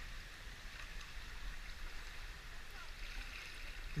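Faint, steady sound of a small river's water moving around a kayak.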